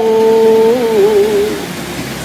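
A single voice chanting Vietnamese scripture verse in a drawn-out sung style, holding one long note that wavers and dips before trailing off about a second and a half in. A quieter steady background noise continues after it.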